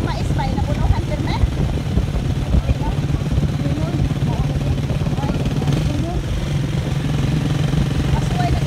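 Small motorcycle engine running at a steady speed with a constant low hum and road rumble, ridden along a concrete farm road.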